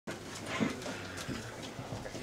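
Faint room sound of a meeting room: low, indistinct voices and a few small clicks and rustles.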